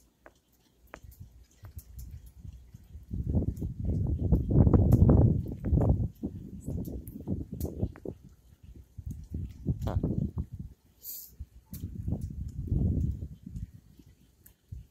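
Gusty wind buffeting the microphone in swelling low rumbles, loudest a few seconds in and again near the end, with scattered small clicks and knocks.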